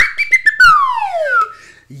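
A loud whistled glide that peaks at the start, holds briefly with a few clicks, then falls steadily in pitch and fades over about a second.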